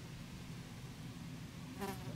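A low, steady buzzing drone, like a fly or other insect close to the microphone, with one brief sharp high-pitched sound near the end.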